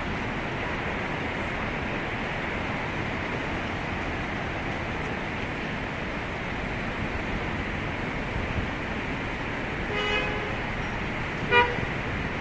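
Steady city traffic noise. Near the end a car horn sounds twice: a short toot, then a shorter, louder one about a second and a half later.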